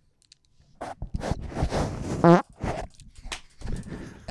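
A long, raspy fart picked up close on a microphone, lasting about a second and a half with a short pitched note near its end, followed by a few shorter sputters.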